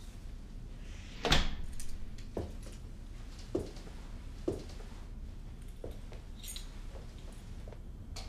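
A door closing with a sharp knock about a second in, then a few softer knocks about a second apart, over a low steady hum.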